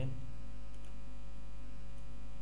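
Steady electrical mains hum on the recording, with two faint clicks about three-quarters of a second in.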